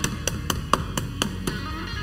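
Background guitar music with a steady beat of about four ticks a second.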